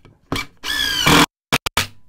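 DeWalt 20V DCF887 brushless impact driver on its mode-two speed setting, run in short trigger bursts driving a long screw into a wooden beam. A brief burst comes first, then a louder run of about half a second whose motor pitch rises, then three very short blips near the end.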